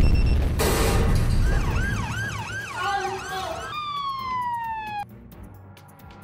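A sudden loud bang with a second of rushing noise. Then an ambulance siren wails, rising and falling about twice a second, and finally a long siren tone falls in pitch before cutting off about five seconds in.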